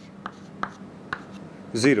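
Chalk on a chalkboard, light taps and scrapes as a straight line and arrowhead are drawn, about four faint strokes spread over a second and a half.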